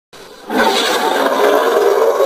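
Logo intro sound effect: a faint start, then a loud whooshing swell about half a second in that holds with a steady low tone underneath.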